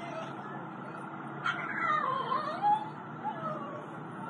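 A high wailing cry that starts suddenly about a second and a half in, falls and then rises in pitch for over a second, and is followed by a shorter one, over a steady outdoor background noise.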